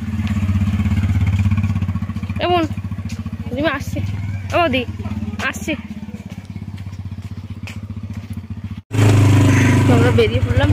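Single-cylinder motorcycle engine running at idle, then pulling away and growing fainter as the bike rides off. A few short voice calls sound over it. After an abrupt cut near the end, a motorcycle engine runs loud and close while under way.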